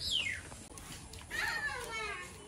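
Faint high-pitched vocal calls: a quick falling squeal right at the start, then a longer wavering call about a second and a half in.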